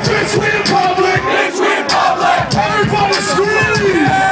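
Concert crowd yelling and shouting along at a live hip hop show, over a beat played loud through the PA.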